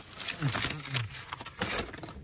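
Paper bags crinkling and rustling in irregular crackles as a hand rummages through dried beef jerky strips.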